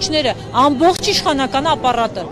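A woman speaking in Armenian into a handheld microphone, talking continuously.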